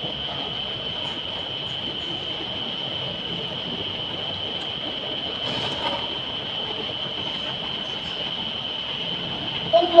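Steady background hiss with a constant high-pitched whine. A boy's voice calls out at the very end.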